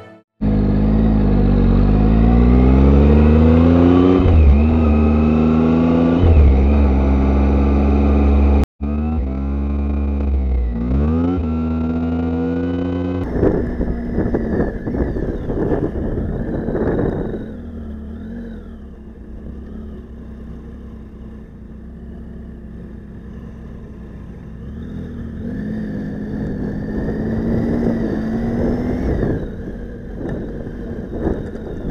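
Motorcycle engine heard from on the bike, accelerating through the gears: its note rises and drops several times over the first dozen seconds, with a brief cut-out near the middle of that stretch. It then settles to a quieter, steadier engine note with road noise as the bike rides along slowly.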